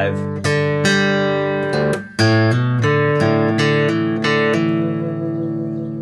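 Steel-string acoustic guitar fingerpicked in drop D tuning, playing a G-chord figure of single notes and open strings that ring over one another. The notes stop briefly about two seconds in, then the picking resumes with faster notes.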